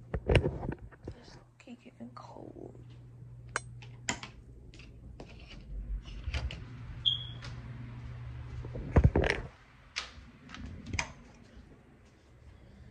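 A phone being picked up and handled close to the microphone: knocks, bumps and rustles, loudest just after the start and again about nine seconds in, over a steady low hum. A brief high tone sounds about seven seconds in.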